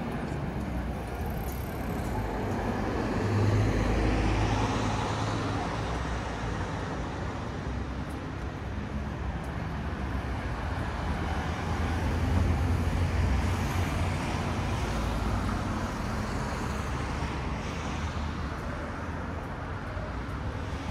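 Road traffic on a city street: vehicles passing close by with a steady low rumble and tyre noise. It swells as one passes about four seconds in and again for a few seconds around twelve seconds in.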